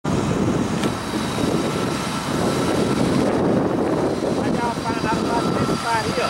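Steady low rumbling noise, with faint voices starting near the end.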